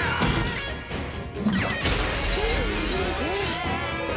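Dramatic cartoon score with a loud crash, like something shattering, about two seconds in, followed by a brief hissing tail and a voice grunting.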